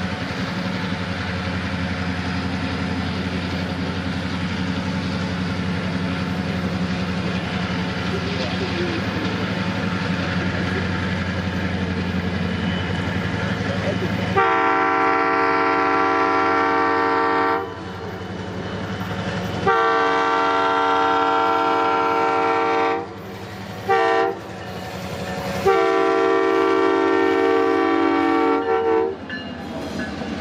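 Two EMD F-unit diesel locomotives approaching with a steady engine rumble. About halfway through, one of them sounds its air horn in the grade-crossing signal: long, long, short, long.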